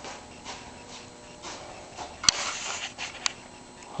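Quiet room tone with a faint steady hum, broken by one sharp click about two seconds in and a fainter click about a second later.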